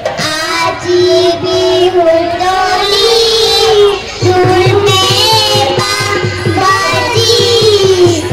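Young girls singing a Bihu folk song through a stage PA, holding long wavering notes over a steady drum beat, with a short break in the singing about four seconds in.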